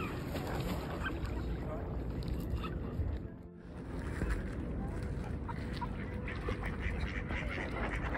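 Ducks calling on a pond: scattered short, faint calls over a steady noisy background, which drops out briefly about halfway through.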